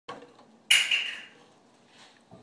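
Handling noise from a fiddle and bow moved close to the microphone: a sudden sharp clatter about two-thirds of a second in, a second smaller one right after, dying away over about half a second.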